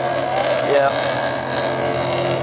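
A fishing boat's engine running with a steady, even hum. A brief voice is heard about three-quarters of a second in.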